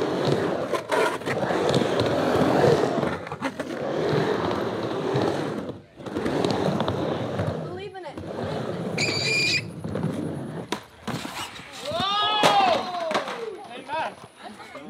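Skateboard wheels rolling and carving on a wooden vert ramp, a steady rumble that swells and fades with each pass. In the second half come a few sharp knocks, a brief high squeal, and near the end a person's drawn-out wavering call.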